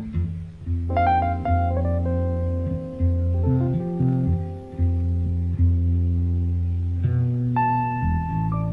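Live jazz-fusion band music: an electric bass plays long, sustained low notes while higher notes ring above them, with a new cluster of high notes coming in about a second in.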